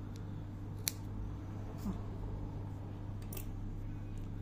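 Spring-loaded thread snips cutting through the wrapped cotton yarn loops of a tassel: one sharp snip about a second in, then a few quieter clicks, over a steady low hum.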